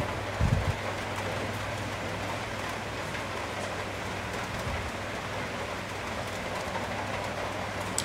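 A steady, even hiss like falling rain over a low steady hum, with a brief low thump about half a second in.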